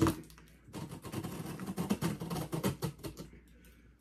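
Scissors blade slitting the packing tape on a cardboard box: a rapid run of scratchy clicks and scrapes starting just under a second in and lasting about two and a half seconds.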